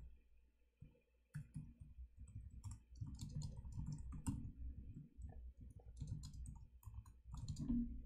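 Computer keyboard being typed on in quick, uneven runs of key clicks with dull thumps, starting about a second in after a short pause.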